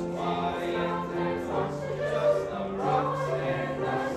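Mixed school choir singing, several voice parts holding notes together in harmony.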